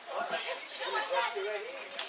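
Several people talking over one another in chatter, with laughter breaking out near the end.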